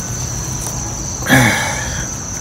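Insects trilling steadily in one continuous high-pitched note. A brief vocal sound from a man comes about two-thirds of the way in.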